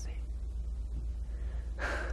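A person's quick, sharp intake of breath near the end, over a steady low hum.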